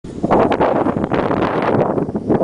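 Wind buffeting the camera's microphone, a loud, uneven rushing noise.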